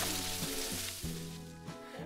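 Mountain bike tyres rolling and sliding over loose shale scree, a gritty hiss that fades out about a second in. Background music with steady tones underneath.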